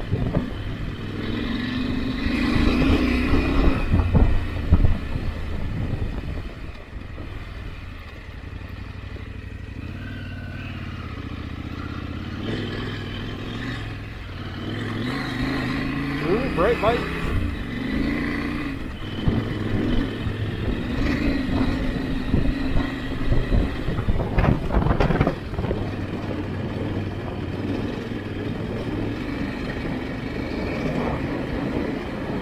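Adventure motorcycle engine running at low road speed on a gravel track. Its note drops and quietens for a few seconds, then rises again about halfway through, with tyre noise on the gravel underneath.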